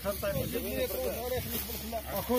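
People talking, indistinct, over a steady background hiss.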